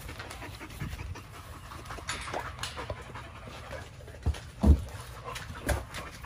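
American bully dog panting steadily, with a few short knocks near the end.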